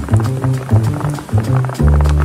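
Background music: a bass line of short notes with a quick beat.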